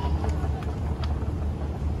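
Moving walkway running with a steady low rumble, a few faint ticks over it.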